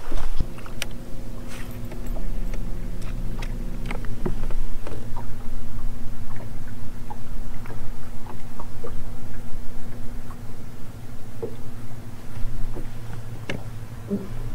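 Bow-mounted electric trolling motor running with a steady low hum that changes about four seconds in, with scattered light clicks and taps from the fishing tackle and the boat.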